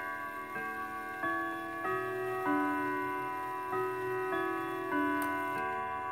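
Howard Miller wall clock playing its three-quarter-hour chime melody, a new ringing note struck about every 0.6 s and each hanging on under the next. The chime comes as the minute hand reaches the 45, now close to on the minute after the minute hand was reset on its shaft to correct a late chime.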